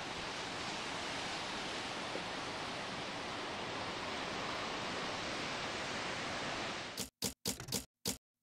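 Steady wash of distant ocean surf and wind. A little before the end it cuts off abruptly and gives way to a quick series of sharp clacks, several in two seconds, with silence between them.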